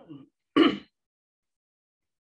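A woman clearing her throat once, short and sharp, about half a second in, just after a softer brief sound from the same voice.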